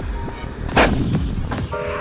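A 155 mm Panter towed howitzer firing: one sudden blast about a second in, the loudest sound, trailing off in a short rumble. Background music with a steady beat runs underneath.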